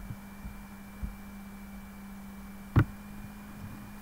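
Steady low background hum with a faint high whine over it, broken by a single sharp knock about three-quarters of the way in.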